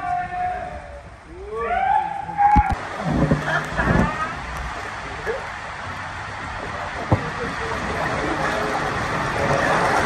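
Riders sliding down an enclosed water-slide tube. Rushing water makes a steady rush that starts about three seconds in and grows louder toward the end, after a few short shouts near the start.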